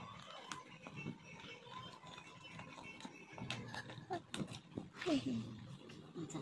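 Stiff plastic panels of a collapsible food cover clicking and knocking as they are fitted into its round frame by hand. Two short voiced sounds falling in pitch come about four and five seconds in, the second the loudest.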